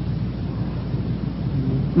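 A pause in recorded speech, filled with the recording's own steady hiss and low rumble; a faint voice shows just before the speech starts again.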